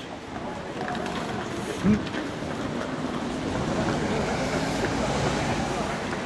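Steady rumble of a vehicle going past on a city street, swelling a little around the middle and easing off toward the end. A man gives a short 'mmh' about two seconds in.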